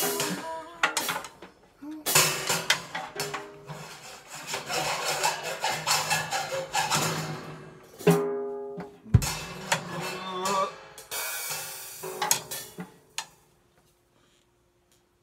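Drum kit played freely with sticks, in irregular strokes on drums and cymbals with stretches of cymbal wash. About eight seconds in a drum strike rings with a clear pitch, followed a second later by a deep drum hit. The playing stops shortly before the end, leaving a faint steady ringing tone.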